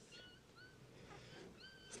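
A weak puppy whimpering faintly: about three short, high, thin whines, at the start, about half a second in, and near the end.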